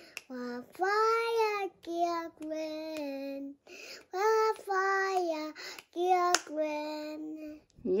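Young boy singing a string of short, held notes in brief phrases with small gaps between them. A single sharp click sounds about six seconds in.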